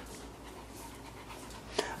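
Faint, steady breathing of two-week-old Cavalier King Charles Spaniel puppies, with a brief click near the end.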